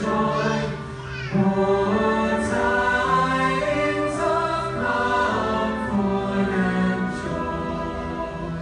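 Large choir singing in long held notes. A brief pause about a second in leads into the next phrase.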